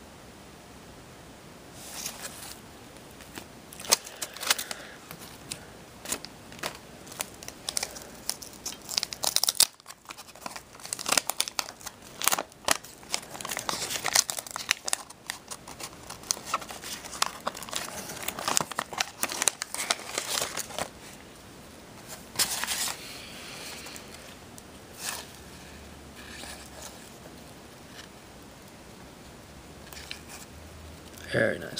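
Paper wax-pack wrapper of a 1985 Topps trading-card pack being torn and crinkled open by hand: a dense run of crackling and tearing from about two seconds in until about two-thirds of the way through, then only a few brief rustles.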